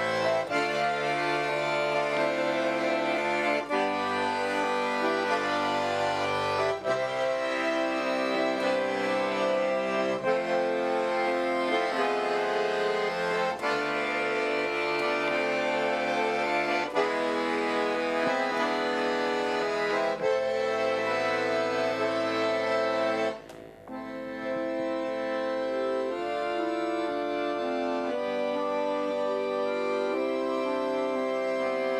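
Custom-built chromatic khromka garmon (Russian button accordion) played solo: a classical piece with chords under a moving melody. The playing breaks off briefly about 23 seconds in, then goes on.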